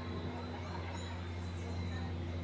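Steady low background hum with a few faint, short high-pitched chirps over it.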